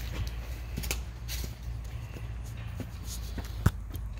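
Footsteps and shuffling while a phone camera is handled, over a steady low rumble, with scattered light clicks and one sharp click near the end.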